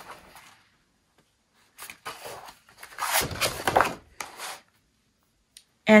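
A sheet of white cardstock being handled and slid across a scoring board: a few short papery rustles and scrapes, the loudest about three seconds in.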